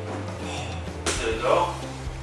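Background music, with a sudden joint crack about halfway through as a chiropractor's side-posture spinal adjustment releases, followed by a short laugh.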